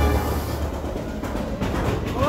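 Deep, loud rumble under a rushing noise, with a brief clatter of knocks about a second and a half in, as the ride's music fades out.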